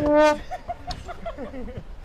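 A soccer ball kicked hard, with one sharp thud, followed at once by a brief, loud pitched sound and then a quick run of short chuckling laughs.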